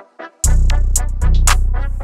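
Trap instrumental beat at 116 BPM in B minor: short repeating melody notes play alone about four times a second, then about half a second in the drums and a deep sustained bass come in and the beat drops.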